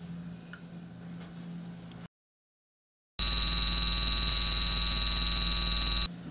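Electrodynamic shaker driving a metal cantilever beam at 7.85 kHz: a loud, steady, high-pitched tone that starts abruptly about three seconds in, the beam ringing at a resonance, its 15th natural frequency. Before it there is a faint hum with a weak 4.1 kHz tone, then a second of silence.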